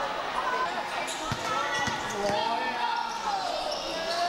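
Spectators chattering in a large covered basketball hall, with a few thuds of a basketball bouncing on the court about half a second apart in the middle.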